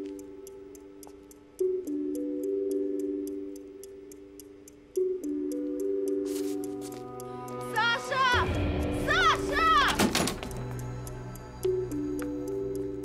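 Tense film score: sustained chords that change every few seconds over a fast, regular ticking. A low boom comes in about eight seconds in, with wavering, bending high tones over it for a couple of seconds.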